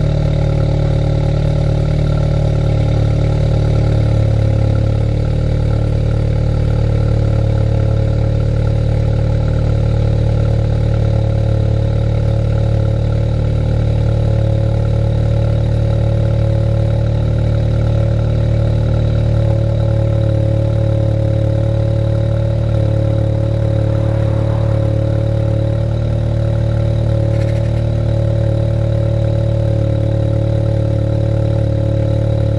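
Audi S3 8V's 2.0-litre turbocharged four-cylinder idling at the quad tailpipes with the exhaust resonator deleted, on its cold-start fast idle in Dynamic mode, the exhaust valves open. The note is loud and steady, with the pitch shifting slightly twice as the idle settles.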